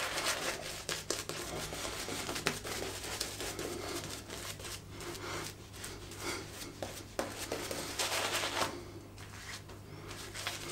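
A shaving brush scrubbing soap lather onto a face: a soft, continuous wet rubbing with fine crackling of lather, over a low steady hum.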